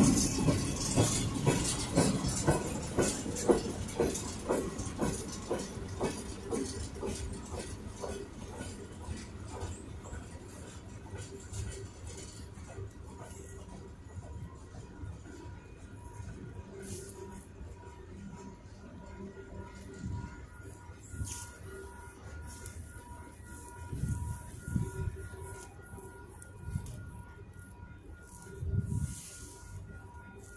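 Freight train's tank cars rolling past, their steel wheels clicking rhythmically over the rail joints. The clicks fade over the first several seconds as the end of the train passes and it moves away, leaving a faint distant rumble.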